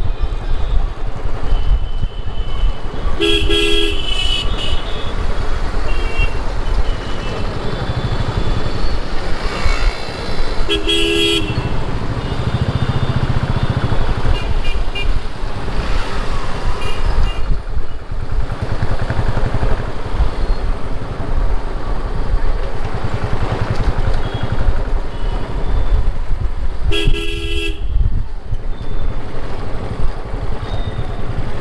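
Motorcycle engine running with road and wind noise while riding through city traffic. A vehicle horn honks briefly three times: about three seconds in, about eleven seconds in, and near the end.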